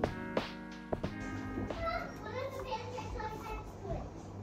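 Background music that fades out about a second in, followed by children's high-pitched voices chattering and playing in the background.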